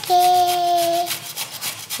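A voice holds one high, steady note for about a second early on. Repeated short scraping or rubbing strokes run under it.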